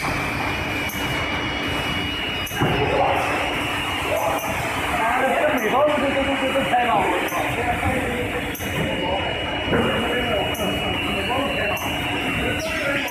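Delta-robot case packing line running: a steady machine hum with a thin high whine and scattered clicks. People talking in the background from about two and a half seconds in.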